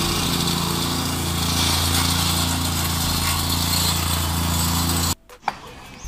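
A vibratory plate compactor with a small petrol engine runs steadily while it levels and compacts the sand bed for paving blocks. It cuts off suddenly a little after five seconds in, and a single knock follows.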